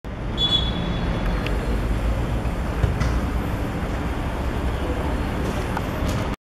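A referee's pea whistle blown once in a short, high blast about half a second in, over a steady low outdoor rumble.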